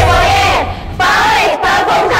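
A group of young women's voices shouting and chanting together in unison over upbeat backing music with a pulsing bass, in two phrases with a short break about halfway.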